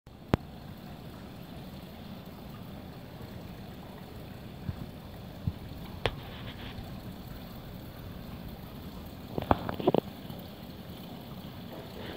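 Small indoor stream water feature running, a steady trickle of water over stones. A few sharp clicks cut through it: one near the start, one about six seconds in, and a quick cluster near the end.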